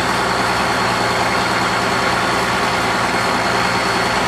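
Boat engine running steadily, with an even rushing noise over it.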